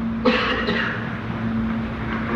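A cough about a quarter second in, followed by a breathy trailing noise, over a steady low hum in the lecture recording.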